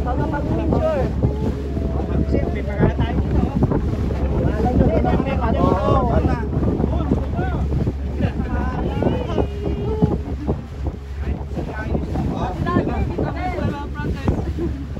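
Wind buffeting the microphone on a moving boat, over a steady wash of choppy water, with people's voices talking on and off.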